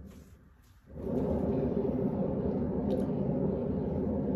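Canvas spinner turning a large poured painting in a short spin: a steady rumble starts about a second in and runs for about three seconds.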